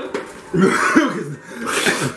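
A man coughing: a longer rough fit about half a second in, then a short sharp cough near the end, his throat burning from a super-hot chili chip.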